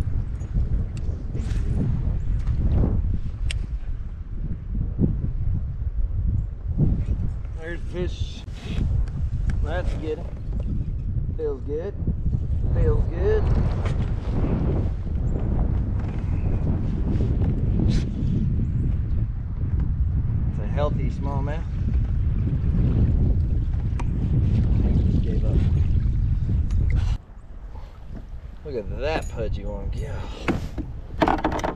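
Wind buffeting the microphone as a loud, steady low rumble that drops away sharply about three seconds before the end. Short spoken exclamations come through it now and then.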